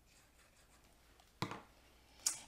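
Near silence, then a single short knock about one and a half seconds in, as a plastic glue bottle is set down on a cutting mat.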